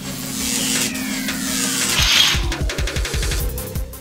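Edited-in magic sound effect: a hissing whoosh with a tone that glides steadily down over about three seconds, joined in the second half by a quick low pulsing.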